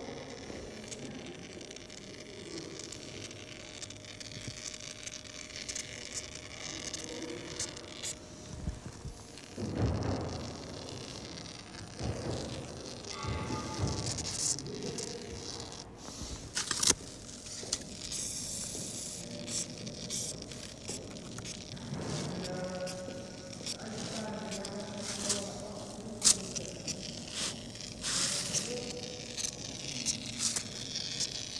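Polyurethane foam squeezed from a foam gun: irregular crackling, sputtering and scraping with many sharp clicks, the loudest about a third of the way in.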